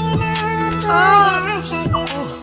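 A song playing: a high singing voice carries a bending melody over a backing track with steady low held notes.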